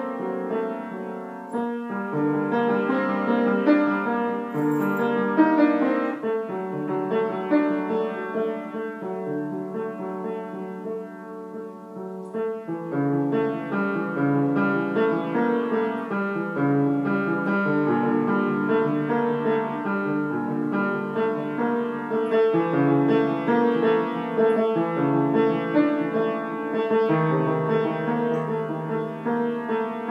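Solo piano playing an original piece in held notes and chords over a low bass line; it softens around ten to twelve seconds in, then comes back fuller at about thirteen seconds.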